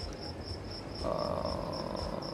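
A cricket chirping steadily in rapid, evenly spaced high pulses. A faint low hum joins it about halfway through.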